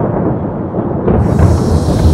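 A deep, loud thunder rumble used as a sound effect. A rushing hiss like heavy rain joins it about a second in.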